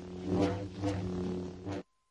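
Logo sound effect: a steady low drone with three short swells of noise over it, cutting off suddenly near the end.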